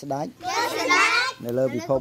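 Speech only: voices talking, children's among them.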